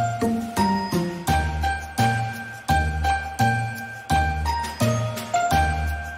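Background music: a chiming, bell-like melody over a bass line, its notes struck at a steady pace.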